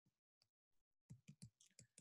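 Near silence with about five faint, short taps in the second half, the sound of a stylus writing on a pen tablet.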